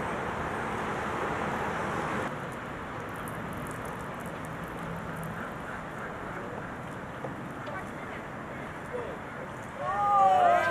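Steady outdoor background noise with faint voices in the distance, and no distinct event; the level steps down slightly about two seconds in.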